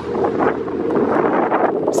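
Wind rushing over the microphone of a camera moving with a cyclist at riding speed, a steady, loud, low buffeting.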